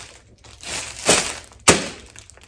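A pack of stiff plastic covers being flexed and handled: a crinkling rustle about halfway through, then one sharp plastic snap near the end.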